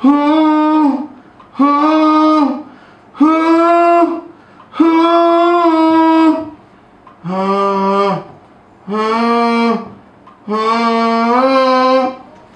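A man singing a wordless 'ooh' melody into a studio condenser microphone: seven held notes of about a second each, with short breaths between. The last three notes sit lower. He is recording his voice as a sample.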